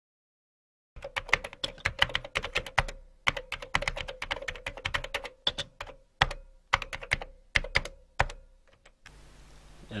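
Keyboard typing sound effect: rapid key clicks in irregular runs with short pauses, starting about a second in and stopping near the end.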